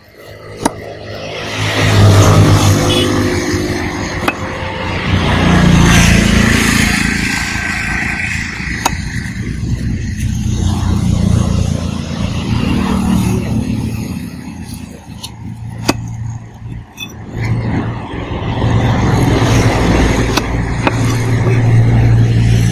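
Motor vehicle engines running close by, a steady low hum that swells and fades several times as traffic passes. A few sharp knocks, a cleaver striking a wooden chopping block, stand out now and then.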